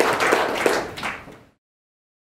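Audience applauding with dense, irregular claps that fade and cut off to silence about a second and a half in.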